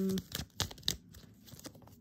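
Tarot cards being handled and drawn from the deck: a few sharp card snaps in the first second, then soft rustling, after a brief hummed "mm" at the start.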